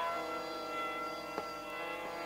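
Sarangi playing softly in raag Kaunsi Kanada: a quiet sustained note with steady ringing tones beneath it. There is a faint tick about one and a half seconds in.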